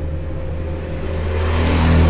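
A steady low hum, with a motor-vehicle engine sound growing louder through the second half.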